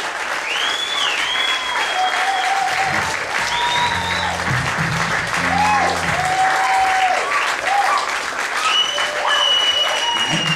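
Audience applauding steadily, with long whistles and cheers rising and falling over the clapping. A low held tone sounds for a few seconds around the middle.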